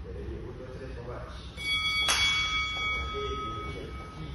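A gym round timer sounds a single bell tone about one and a half seconds in. It strikes sharply and rings on for about two seconds, marking the start of a sparring round. Faint voices murmur underneath.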